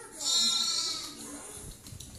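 A young lamb bleating once, a high call lasting under a second.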